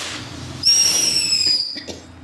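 Jr Cuckoo firework fountain hissing briefly, then giving a loud, shrill whistle about a second long that dips slightly in pitch and cuts off suddenly as the device burns out.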